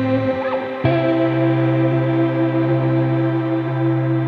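Live ambient electronic music: sustained, held chords, with a new chord coming in sharply about a second in and ringing on steadily.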